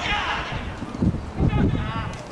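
Voices shouting out on a football pitch, with low uneven thumps about a second in as the camera is moved.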